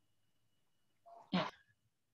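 Silence, broken about one and a half seconds in by a single short, breathy sound from a woman's mouth.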